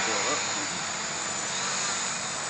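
A 660-size Scarab quadcopter's four electric motors and propellers running steadily in flight: a constant whirring hiss with a faint high whine.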